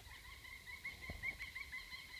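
Woodpecker calling faintly: a quick run of short, high notes over a steady high tone, stopping at the end.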